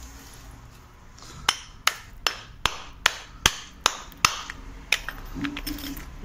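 Hammer striking a hardened latex-modified mortar patch on a concrete floor, about nine sharp blows at roughly two and a half a second, starting after a second and a half and stopping near the end. The blows are knocking the patch loose to test how well it has bonded to the latex-primed floor.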